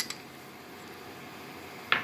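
Quiet room tone, then a single short, sharp clink of glass near the end as the glass bowls knock together.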